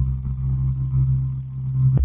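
A low, steady electronic drone with an engine-like hum, part of a synthesized score, with no beat yet.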